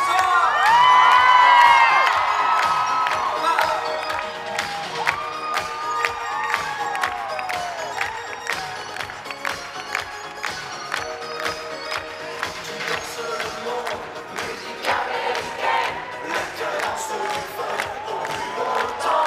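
Live pop music with a steady beat playing over an arena PA, with the audience cheering loudly. A burst of high-pitched cheers and whoops comes in the first couple of seconds, the loudest part, then eases into ongoing crowd noise under the music.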